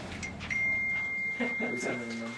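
A steady high-pitched electronic beep, a single pure tone that starts about half a second in and holds, with a voice briefly heard beneath it near the end.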